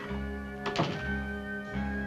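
A room door being shut, one solid thunk a little under a second in, over background music of held chords.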